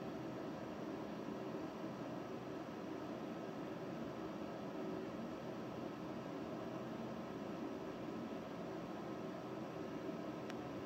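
Steady, faint background noise, a constant hiss with a slight hum and no distinct events.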